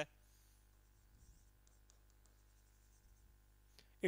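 Near silence broken by faint taps and scratches of a stylus writing on an interactive touchscreen board: a few light ticks about halfway through and one more near the end.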